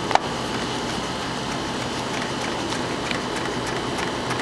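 Chef's knife chopping chervil on a plastic cutting board: light, irregular taps of the blade on the board, several a second. Under them runs a steady background hum and rush, the loudest sound.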